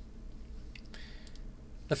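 A couple of faint computer mouse clicks about halfway through, over a low steady hum.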